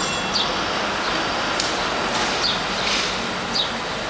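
Steady background hiss of outdoor noise with a few brief, high chirps from house sparrows dust-bathing on bare dirt.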